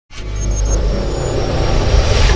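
Cinematic logo-intro sound effect: a deep rumble that starts from silence and swells steadily louder, with a few faint high glinting tones near the start.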